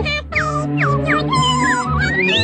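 Orchestral cartoon score: a held low chord under three quick falling glides in the first second, then a held higher note with wavering high tones.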